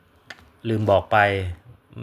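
A man speaking Thai, with a single short click just before he starts to speak.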